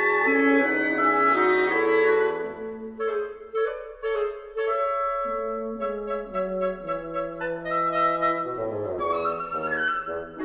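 A wind quintet (flute, oboe, clarinet, horn and bassoon) playing classical chamber music. Full sustained chords give way about two and a half seconds in to a lighter Allegretto passage of short repeated notes, with a quick run of notes near the end.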